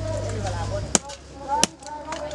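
Two sharp chops of a long knife cutting dried wild boar meat against a wooden plank: one about a second in, the second under a second later.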